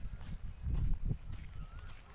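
Footsteps walking on a wet dirt road, a crisp step about every half second, with low rumbling thumps on the phone's microphone.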